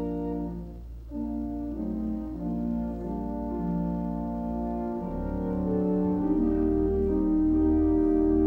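Church organ playing the offertory in slow, sustained chords over held bass notes, the chords changing every second or so; the bass fills out about halfway through.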